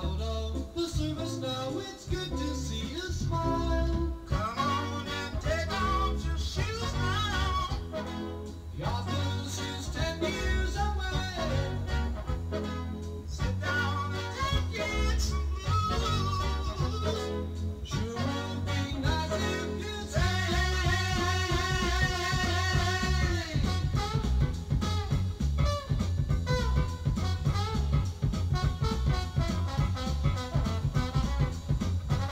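Jazz-rock band recording from 1970 with bass, drums, guitar and vocals. About twenty seconds in, the horn section holds a few long chords, then the band plays on more busily.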